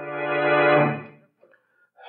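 Organ music bridge marking a scene change in a radio drama: a held chord swells and then fades out after about a second.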